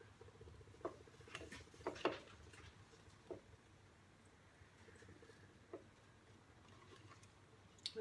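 Quiet handling of a cord and a drilled piece of dry timber while a knot is tied: a few faint, brief rustles and taps over low room noise.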